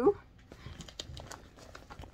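A clear plastic bag crinkling faintly as it is handled, in a few soft scattered crackles.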